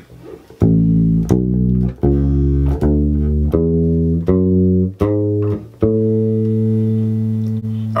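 Electric bass guitar playing one octave of an A major scale ascending, A up to A: eight plucked notes, evenly spaced, with the top note held for about two seconds.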